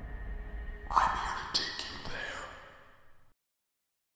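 Horror-trailer sound design: a low rumbling drone with a sudden hit about a second in and a second hit about half a second later. It then fades away and cuts to silence a little after three seconds.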